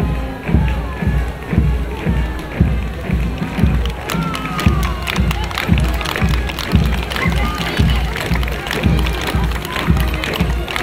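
A column of soldiers marching in step, their boots striking the road together about twice a second, over military march music.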